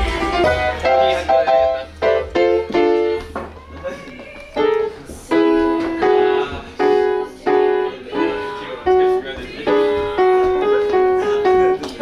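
Piano played by hand: a simple tune of single notes and small chords, each note sounding and fading, picked out on the keys while standing.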